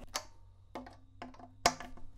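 A screwdriver clicking against the metal neck screws of a carbon fiber acoustic travel guitar as they are tightened: a few light clicks, then a sharper one about one and a half seconds in. A faint low ring follows some of the clicks.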